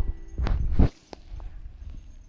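A background music track breaks off early on, leaving low, uneven rumbling and thumping from a moving camera following mountain bikes down a forest trail: trail bumps and air on the microphone. The rumble swells loudest just before a second in, and a single sharp click comes a moment later.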